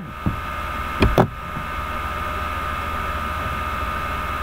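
Steady electrical hum with a constant high whine running underneath, broken by a short click about a quarter second in and a brief louder sound about a second in.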